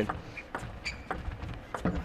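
Table tennis ball striking the rackets and the table in a fast rally: a quick, irregular series of sharp clicks.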